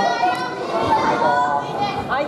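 Several high-pitched voices calling and shouting at once, overlapping throughout: onlookers urging on the fighters.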